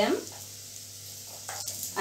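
Boiled sweet potato cubes sizzling faintly in coconut oil in a nonstick frying pan as a spatula turns them, with one sharp click of the spatula near the end.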